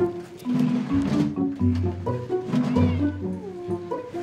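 Background music with slow, stepping low notes, and a domestic cat meowing once near the end as she resists being caught and put in her travel box.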